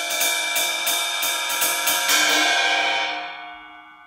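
18-inch crash cymbal played with a 5A drumstick, struck about four to five times a second, then left to ring and fade out from about two seconds in. This is the cymbal on its own, with no plate under it, giving its full open wash.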